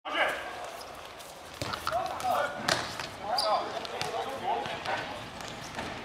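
A futsal ball being kicked and bouncing on a hard court, a few sharp thuds about two to three seconds in, with players' voices calling out around them.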